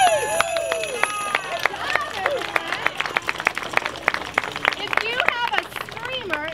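Excited crowd voices, high children's calls among them, over a scattered, irregular clatter of sharp clicks from hand-held wooden clappers.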